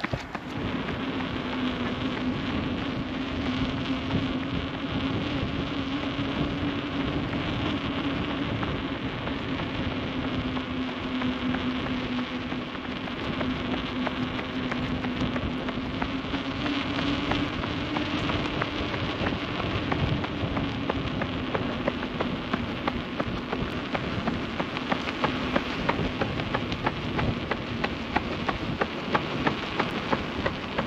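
Steady wind rush and road noise from a camera moving along at running pace, under a low steady hum that drifts slightly up and down in pitch, as from a motor, with a few sharp ticks near the end.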